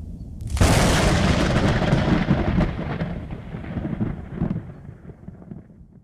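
Cinematic boom sound effect for a logo reveal: a sudden loud crash about half a second in, which dies away in a long low rumble over the next several seconds.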